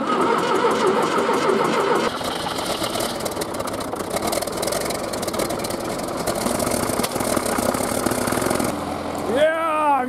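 The diesel engine of a 1976 John Deere 450-C bulldozer catches on a cold start and runs steadily. A man's voice comes in near the end.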